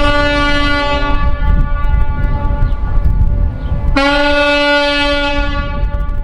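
Ships' horns sounding, several pitches at once. One long blast stops about a second in, and another starts about four seconds in and holds for nearly two seconds before trailing off. A low rumble runs underneath.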